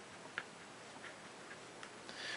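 A handful of faint short ticks from a marker tip writing on paper, over quiet room tone.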